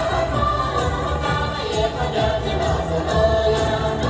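A group of voices singing a Tibetan dance song over instrumental accompaniment, steady and continuous.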